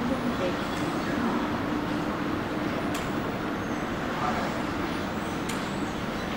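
Steady jet engine noise from an Embraer E190 airliner's twin turbofans as it rolls out on the runway after landing, with a steady low hum, indistinct voices close by and a few light clicks.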